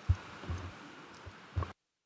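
A few low thumps from a tabletop gooseneck conference microphone being handled as its button is pressed, then the audio cuts out to dead silence near the end as the microphone channel switches.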